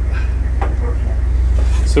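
A steady, loud low hum with faint, indistinct voices over it.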